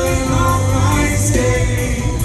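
Live band playing in concert through a loud PA, with singing over drums, bass and guitar, heard from among the audience.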